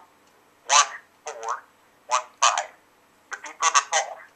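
A voice over a mobile phone's speaker, heard as short, choppy bursts with gaps between them.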